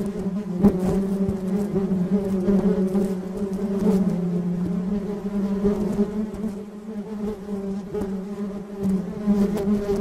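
Many honeybees buzzing together in a steady low hum whose pitch wavers slightly, with a faint click about a second in.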